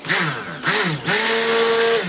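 Handheld stick blender run in short spurts in liquid cold-process soap batter, the last spurt a steady motor whine of about a second before it stops. The soap is being blended toward trace.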